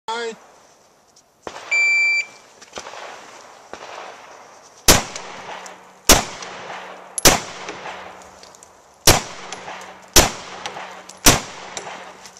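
A shot timer gives one steady electronic beep about two seconds in. From about five seconds in, a semi-automatic pistol fires six shots, roughly one a second, with a slightly longer pause after the third.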